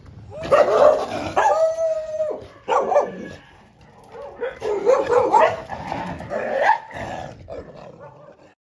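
A dog barking and yelping behind a metal gate in three bouts, with one drawn-out note early in the first bout. She is barking at her returning owner as at a stranger.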